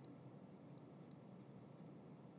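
Near silence with faint, scattered ticks and light scratching of a stylus drawing on a tablet screen.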